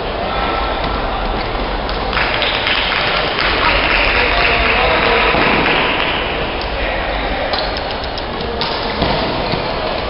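Steady din of a busy indoor badminton hall: many voices mixed with scattered thuds from play on several courts, with a denser hiss swelling from about two seconds in until near the end.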